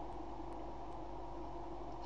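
Steady background hum and hiss of room tone, with no distinct events.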